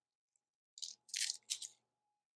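Papery garlic skins crackling as a head of garlic is broken apart by hand to free a clove. The crackling comes in a few short bursts about a second in.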